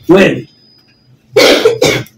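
A man coughing: a short voiced sound at the very start, then a harsh cough in two quick parts in the second half.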